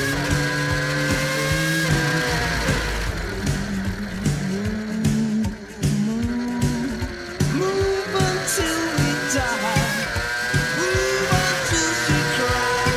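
Rock music mixed with the onboard sound of a racing sidecar's engine, its pitch rising and falling as it revs through the gears and brakes for corners.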